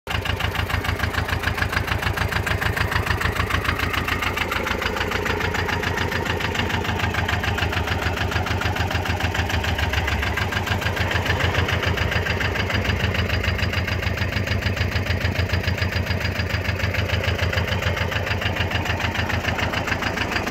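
Nibbi G 119 motoagricola's engine running steadily with an even, rapid beat.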